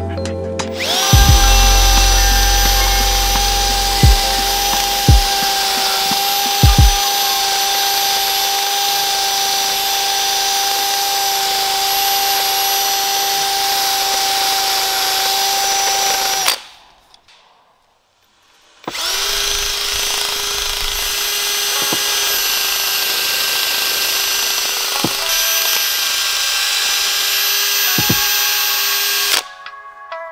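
Cordless drill spinning a small wire wheel against the rusty cast-iron block of a BMW S52 engine, stripping rust and old paint: a steady motor whine that stops for about two seconds midway and then starts again. A few knocks in the first seven seconds.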